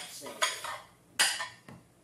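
Stacked salad plates clinking together twice as they are handled and set down, the second clatter just over a second in being the louder.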